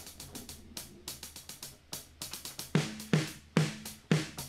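Drum-kit samples triggered from a MIDI keyboard controller: a quick, slightly uneven run of closed hi-hat hits, about five a second. A few heavier drum hits join in near the end.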